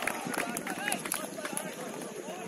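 Footballers' voices calling and shouting across the pitch during play, several overlapping, with a few sharp clicks among them.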